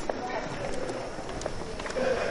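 Gymnasium background sound: indistinct voices with a few scattered light taps.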